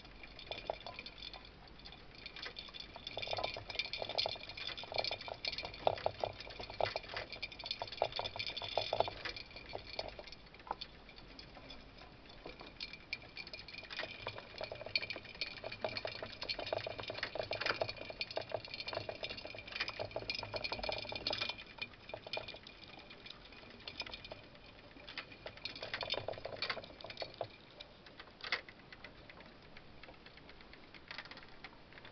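Two mice running together in a Rotastak Rainbow Runner enclosed plastic exercise wheel: the spinning wheel and scrabbling feet make a fast clatter of ticks and rattles. It comes in spells and goes quieter between them.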